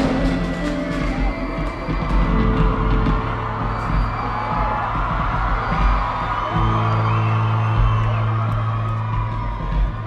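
Live concert music with held synth chords and a deep bass note that grows stronger past the middle, over a large crowd cheering and whooping.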